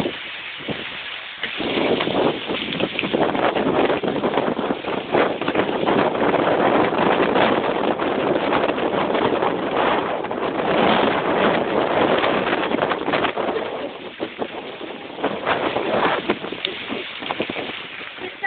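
Hail pelting down on tarmac and parked vehicles: a dense rattle of countless small impacts, swelling about a second and a half in and easing off near the end.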